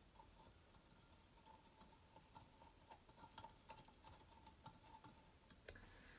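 Near silence, with faint light ticks of a glass stirring rod against a glass beaker as the solution is stirred.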